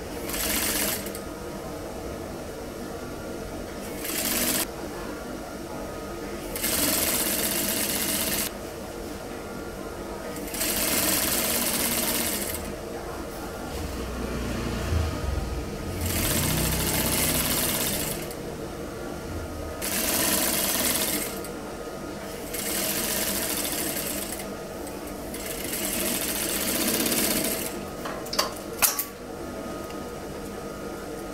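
Industrial lockstitch sewing machine stitching a long seam in stop-and-start runs of one to two seconds, about eight runs with short pauses between. A few sharp clicks come near the end.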